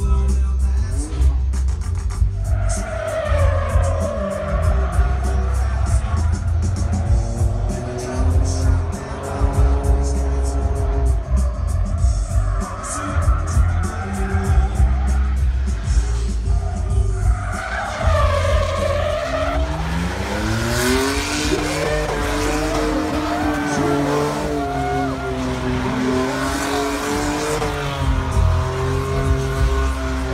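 Loud music with a pulsing bass beat plays throughout. From about two-thirds of the way in, a Ford Mustang drift car's engine revs up and down over it while its tyres squeal and skid through a drift.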